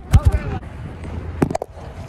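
Phone handling noise: a few sharp knocks and bumps on the microphone as the phone is fumbled and moved around, with a cluster of clicks about one and a half seconds in, over brief wordless vocal sounds.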